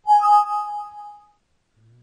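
Windows 7 alert chime sounding once as a 'Save changes?' warning dialog pops up. It is a bright pitched ding that rings and fades away over about a second.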